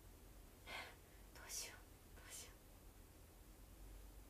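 Three short, soft whispered bursts, about a second in and up to about two and a half seconds in, over near silence.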